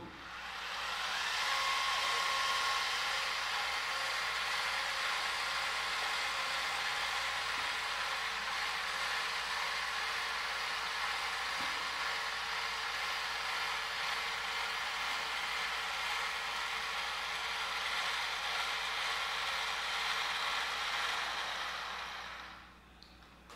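SkyWatcher AZ-GTi telescope mount's motors slewing at full speed, a steady geared whir that builds up in the first second or two and fades near the end as the mount reaches its Go-To target.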